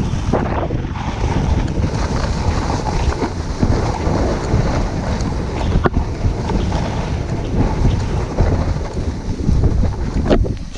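Loud, steady rushing wind noise buffeting a GoPro's microphone as the rider snowboards downhill, mixed with the board sliding over snow. A single sharp click about six seconds in.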